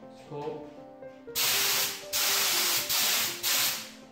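Compressed-air spray gun spraying a coat of PVA release agent over a mould board and model, in four hissing bursts with short breaks between them, starting about a second in.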